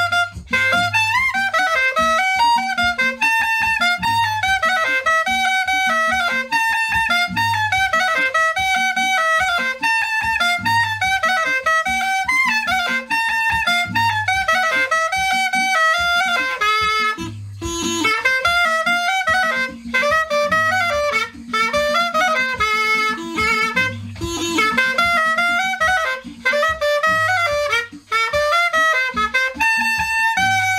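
A flauta de millo, a cane flute with a reed cut into its body, plays a lively cumbia melody of quick, short notes with a reedy, buzzing tone. A regular low beat pulses underneath.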